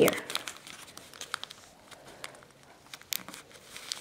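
Sheet of origami paper being folded and creased by hand: soft, scattered crinkles and light ticks of the paper.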